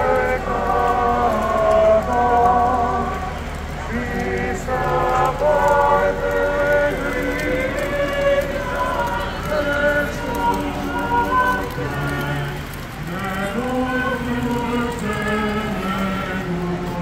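A group of men's voices chanting a religious hymn in procession, long held notes moving step by step in pitch, over a low steady rumble of street noise.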